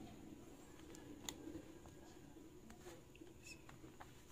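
Near silence: room tone with a low steady hum and a few faint ticks.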